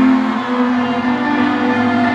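Live band playing the opening of a song: a sustained chord of held notes that shifts to a new chord about a quarter of the way in, leading into guitar.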